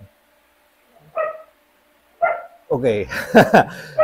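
A man laughing heartily, with a quick "ok", which is the loudest sound. Before it come two short yelp-like sounds about a second apart.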